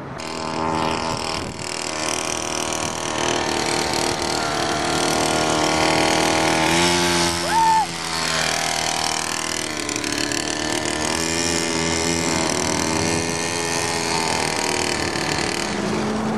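Small minibike engine running as the bike is ridden, its pitch rising and falling with the throttle.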